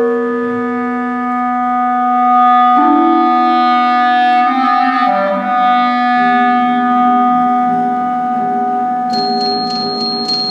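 Clarinet playing long held notes in slow chamber music, moving to new pitches about three seconds in and again about five seconds in. Near the end a run of quick, high struck notes joins it.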